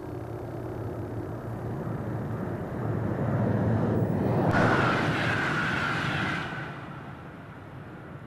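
Deutsche Bundesbahn class 103 electric locomotive and its train passing at speed. A rumble builds as it approaches and peaks about halfway through with a rush of noise and a thin steady high whine, then fades as it runs away down the line.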